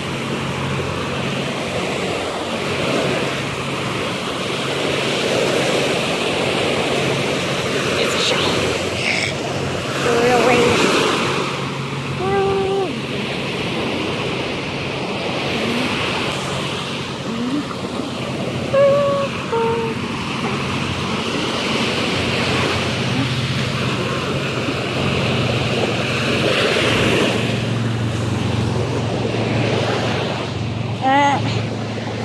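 Small waves breaking and washing up on a sandy beach, a steady surf sound, with brief voices now and then.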